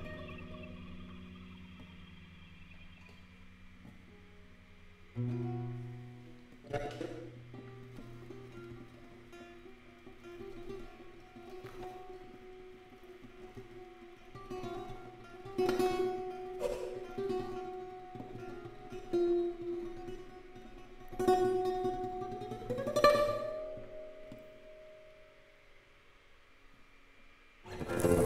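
Lute plucking notes and chords, layered with live electronic processing that holds and repeats the tones as drones. Sharp plucked attacks come every few seconds over the held tones, and the loudest moment is a rising pitch sweep a few seconds before the end.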